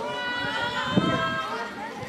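High-pitched children's voices talking and calling over one another, with a brief thump about halfway through.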